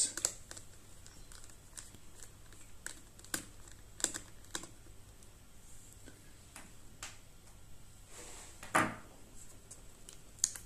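Faint, scattered small clicks and taps of a screwdriver and tiny screws being worked on an open laptop chassis as the battery's Phillips screws are undone, with one louder knock near the end.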